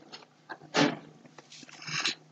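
A quiet pause broken by a short, soft breath from a close microphone about a second in, with another faint breath near the end.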